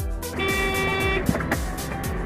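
Car horn sounding one steady blast of a little under a second, starting about half a second in, over background music.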